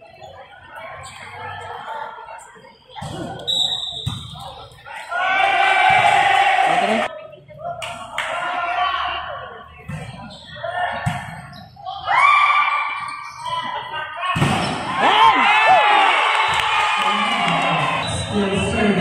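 Volleyball being struck in play, sharp thuds echoing in a large hall, among loud shouts and calls from players and spectators. The longest shouting comes near the end.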